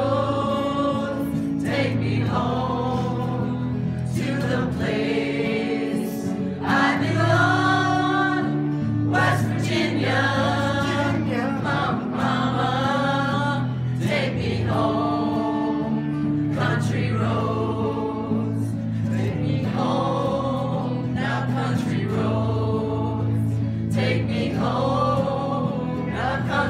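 A group of voices singing together, choir-like, in phrases of a couple of seconds each, with acoustic guitar accompaniment underneath.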